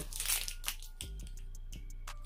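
Thin clear plastic sleeve crinkling as a makeup brush is pulled out of it, the crackle mostly in the first second and quieter after.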